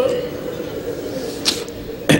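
A man's voice over a microphone and PA trails off at the start, leaving a faint steady room background. About one and a half seconds in there is one short, sharp hiss.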